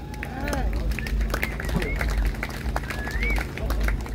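Scattered clapping and whoops from a small audience, mixed with voices, just after the song has ended.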